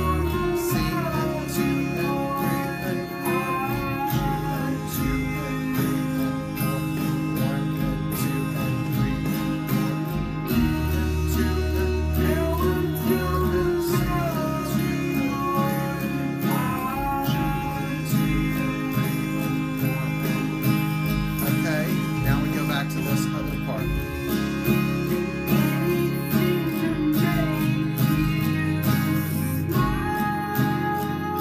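Steel-string acoustic guitar with a capo, strummed through the chorus chords of a song at a slow, steady pace.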